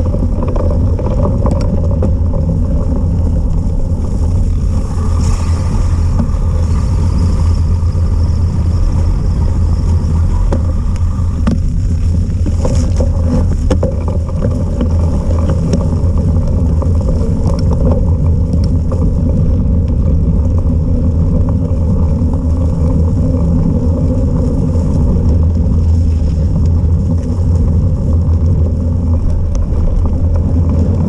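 Steady, loud wind and rolling noise on a bike-mounted camera as a cyclocross bike rides fast over a dirt forest path: a deep, unbroken rumble with a few faint knocks from bumps.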